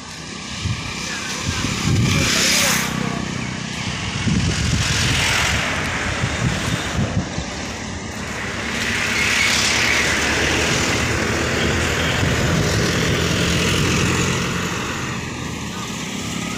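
Heavy-haul truck engine and road traffic running steadily as the multi-axle trailer convoy moves, with louder surges of noise about two seconds in and again around ten seconds in.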